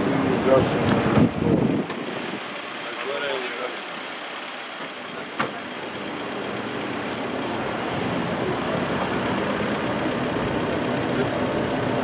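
Cars arriving on a paved forecourt: engine and tyre noise under people talking, with a single sharp knock about five seconds in and the car noise slowly growing louder toward the end.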